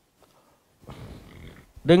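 A brief, faint breathy noise close to a headset microphone, under a second long, about a second in; a man's speech resumes near the end.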